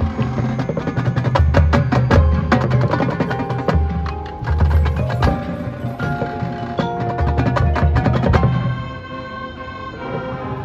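Marching band drumline playing a fast percussion passage: crisp rapid snare and tenor drum strokes over groups of pitched bass drum notes, with ringing mallet-percussion tones. About eight and a half seconds in, the drumming thins out and held pitched notes carry on.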